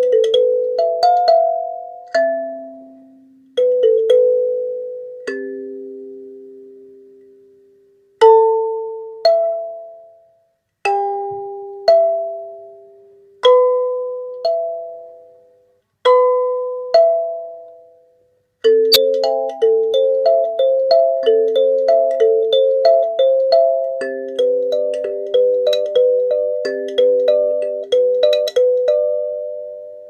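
Wooden kalimba (thumb piano) played with the thumbs: single notes and two-note plucks are left to ring and fade, with pauses between phrases. About two-thirds of the way in, a faster, steady melody of roughly three notes a second begins.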